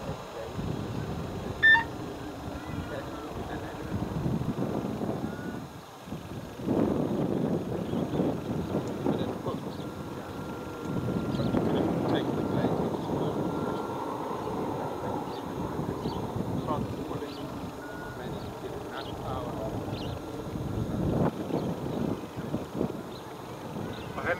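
Distant helicopter in flight, its rotor and engine noise swelling and fading as it lifts off and flies over the fields. A short electronic beep sounds about two seconds in.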